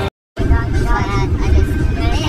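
Low rumble of road noise inside a moving vehicle, with people's voices over it. It follows a moment of silence just after the start.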